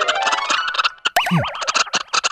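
Cartoon music and comic sound effects: a fast run of clicks and beats, then, about a second in, a wobbling, warbling tone with a steeply falling boing-like glide.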